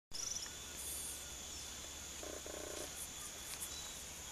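Tropical forest ambience: a steady high-pitched insect drone, with a short, low, pulsed frog croak a little past two seconds in and faint high chirps near the start.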